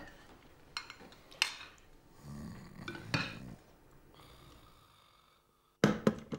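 Spoons and dishes clinking at a dinner table: a few sharp clinks, with a soft low sound about two seconds in. The sound fades almost to silence, then a sudden loud clatter comes right at the end.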